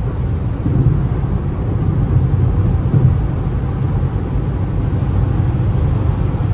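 Steady road and engine rumble heard inside the cabin of a Citroën C3 1.0 cruising at highway speed, with tyre hiss from the wet asphalt.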